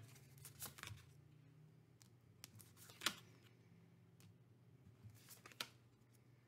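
Faint taps and light clicks of tarot cards being dealt and laid onto a table, a few scattered soft strikes with the clearest about three seconds in, over near silence.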